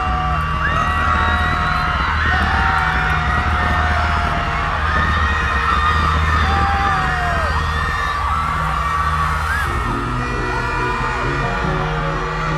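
Loud live concert music played through a stage sound system, with a steady deep bass pulse, under a crowd screaming and whooping.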